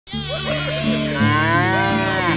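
A cow mooing in one long call that rises and then falls in pitch, over background music.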